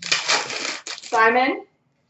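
Foil wrapper of a trading-card pack crackling and tearing as it is ripped open by hand, followed about a second in by a short, louder vocal sound.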